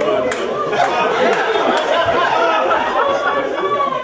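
Several people talking over one another at once, a steady jumble of voices with no single line clear.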